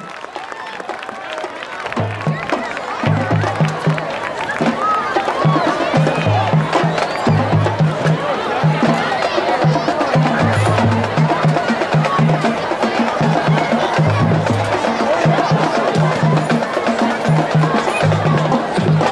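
Marching band drumline playing a marching-off cadence: tuned bass drums hitting in a steady repeating rhythm, with sharp clicks on top. It starts about two seconds in, over crowd chatter from the stands.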